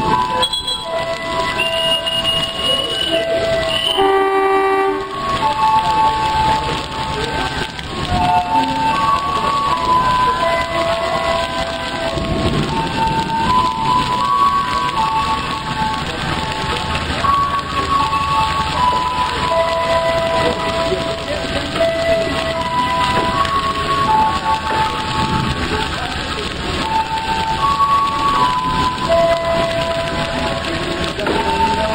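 Heavy rain pouring down steadily, with a simple melody of single held notes playing over it throughout.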